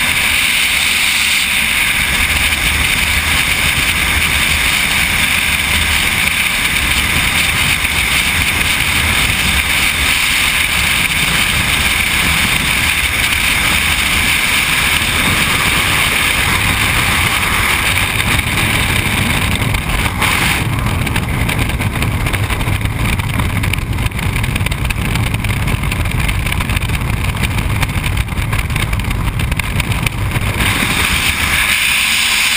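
Loud, steady rush of freefall wind buffeting a skydiver's helmet-mounted camera. The high hiss thins slightly about two-thirds of the way through.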